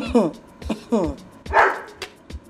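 A woman's short, bark-like mocking laughs, each falling in pitch, about six in quick succession with a breathier burst near the end, mimicking a dog's barking. Background music with a soft, steady low beat runs underneath.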